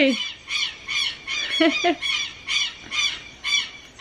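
Southern lapwings (quero-quero) giving a rapid run of harsh, repeated squawking calls, about three a second. These are alarm calls at a small dog that has come onto their lawn.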